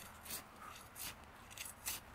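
Steel hand trowel digging into loose soil to loosen it, three faint scraping strokes.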